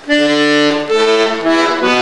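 Accordion, pressed bass buttons played one after another: a sudden start, then held reedy notes that step to a new pitch about every half second, with a lower note near the end.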